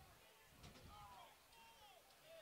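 Near silence, with faint distant voices calling out over low field ambience.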